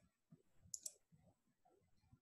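Near silence with two faint, sharp clicks close together about three quarters of a second in.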